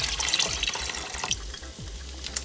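Water poured from a glass measuring cup into a saucepan of milk, splashing steadily and stopping about a second and a quarter in.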